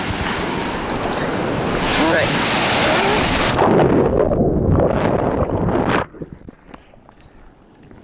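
Ocean wave breaking over a swimmer's waterproof camera held at the waterline: loud rushing surf and splashing, then about three and a half seconds in the sound turns muffled and low as the camera goes underwater. About six seconds in it drops to a quiet underwater hush with a few faint clicks.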